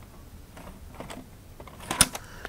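Light clicks and rustles of a plastic VHS cassette being handled, with a sharper, louder click near the end.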